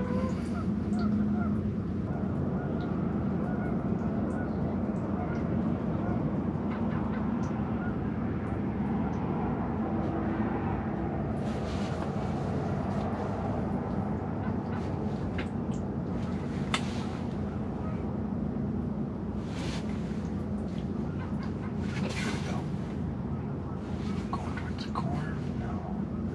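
A steady low drone fills the ice shelter. A few brief rustles and clicks come through it about halfway, and again a few times near the end.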